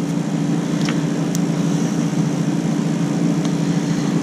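A steady low mechanical hum from a running machine, holding the same pitch throughout, with a couple of faint light clicks about a second in.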